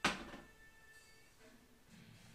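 A single sharp knock of metal cookware at the stove top, ringing briefly and dying away within half a second. Faint background music plays underneath.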